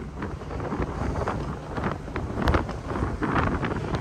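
Wind buffeting the camera microphone on an open ship deck: a low rumble that rises and falls in gusts.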